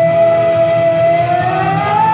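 Live rock song with one long held note, steady at first and sliding up in pitch near the end, over a pulsing low beat.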